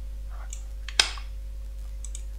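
Steady electrical hum and hiss of a cheap USB electret microphone's high noise floor, with one sharp click about a second in and a fainter tick just before it.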